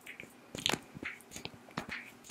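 Fingernails tapping and scratching on a small glass perfume bottle held right against the microphone: irregular sharp clicks and taps, several a second, with soft rustles between them.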